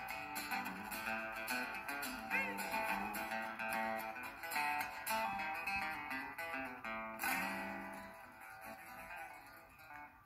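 Two acoustic guitars strumming and picking chords as a song winds down, with a last strummed chord about seven seconds in that rings out and fades.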